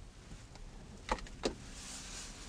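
Two short plastic clicks about a second in, half a second apart, as the hinged overhead sunglasses holder in a 2012 Hyundai Avante's roof console is handled, over a faint steady hiss.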